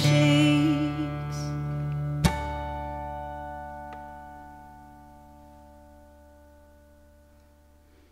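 Taylor acoustic guitar closing a song: the last sung note fades within the first second, then a single plucked chord about two seconds in rings out and slowly dies away over several seconds.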